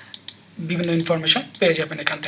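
A man speaking, with a few short sharp clicks just before the talk begins.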